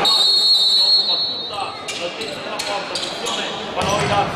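A referee's whistle blown once for about a second, then a run of sharp knocks of the futsal ball and players' feet on the hall's court floor as play restarts.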